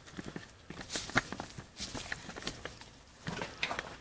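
Handling noise from a camera being lowered and repositioned: scattered light clicks and knocks at irregular spacing, one sharper knock about a second in and a quick cluster of clicks near the end.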